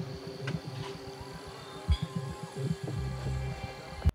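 Quiet dramatic TV soundtrack: a held low note with scattered soft low thuds, and a low rumble coming in about three seconds in.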